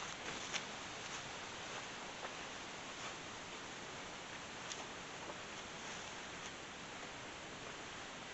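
Quiet background: a faint steady hiss with a few light clicks and rustles, no shot.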